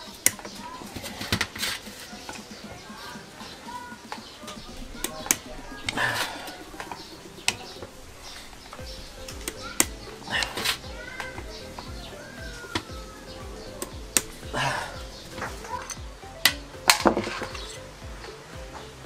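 Scattered metallic clicks and clinks of a screwdriver working the float bowl screws on the bottom of a Yamaha Mio Sporty carburetor, and of the aluminium parts knocking on a metal tray. Background music with a steady beat comes in about halfway.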